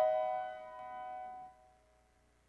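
A grand piano chord ringing and fading away, dying out about one and a half seconds in.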